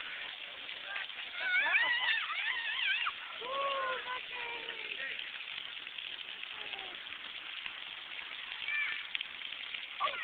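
Splash pad sprayers hissing steadily with falling water, with a young child's high squeals and babble about two seconds in and a shorter falling voice just after.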